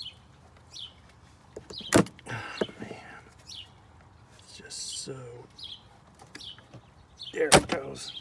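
Hands and a pry tool working around plastic engine-bay parts and a rubber PCV hose: scattered clicks and scrapes, with a sharp click about two seconds in and a louder cluster of clicks near the end.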